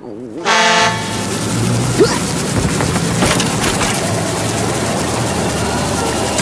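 A street sweeper sounds a short horn blast about half a second in. Its engine and sweeping brushes then run with a steady rushing noise over a low hum as it passes.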